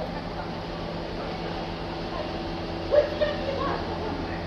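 Steady low hum of a stationary diesel train idling beside the platform, with a brief yelp about three seconds in.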